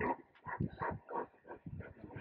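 A run of short animal calls in quick succession, several a second.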